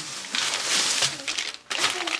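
Plastic bag of burger buns crinkling as it is handled, with a short break about one and a half seconds in.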